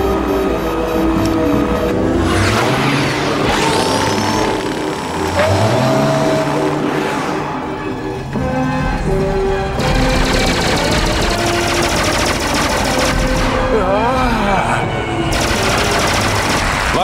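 Cartoon action soundtrack: music under swooping sound effects, giving way in the second half to rapid machine-gun fire from an attacking gunship.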